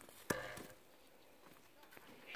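A single sharp knock about a third of a second in, followed by a brief voice-like sound, then quiet outdoor background.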